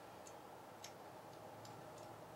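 Near silence: room tone with a few faint, irregularly spaced clicks, the clearest a little under a second in.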